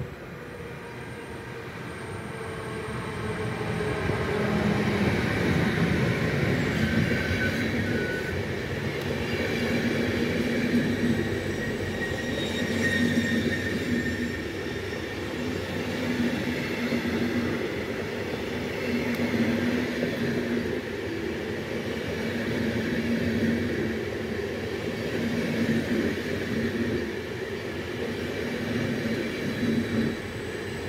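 Siemens Vectron electric locomotive hauling a train of ÖBB Nightjet coaches through a station. The sound grows over the first few seconds as the train nears, then the coaches' wheels run steadily on the rails, with a rhythmic pulse about every two seconds as the coaches go by.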